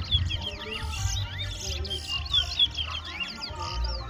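Caged towa-towa songbirds singing in quick runs of high, sliding whistled notes.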